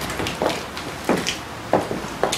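Footsteps of several people walking on hard ground, an uneven run of short scuffs and steps about two a second.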